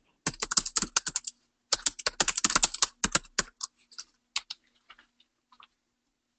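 Typing on a computer keyboard: quick runs of keystrokes that thin out to scattered single taps after about three and a half seconds.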